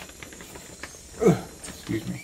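Peruvian rainforest ambience playing from a portable speaker: a steady insect hiss with faint clicks. About a second in, one short voice-like sound falls steeply in pitch.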